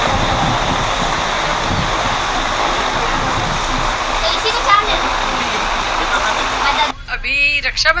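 Steady, noisy ambience of a busy market street, with traffic noise and indistinct voices. A woman starts speaking close up about seven seconds in.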